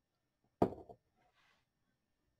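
A single sharp click a little over half a second in: a small hard object knocked or set down. It is followed near the middle by a faint rustle of handling.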